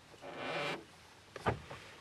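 A wipe rubbing grime off a plastic dashboard control housing: a soft rubbing for under a second, then a light click about one and a half seconds in.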